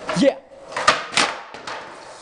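Skateboard hitting a concrete floor in a failed trick: two sharp knocks about a second in, a fainter one just after, as the rider falls onto the board.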